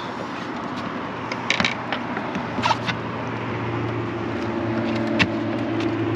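A steady engine drone, joined about halfway through by a second, higher hum, with a few sharp clicks and knocks.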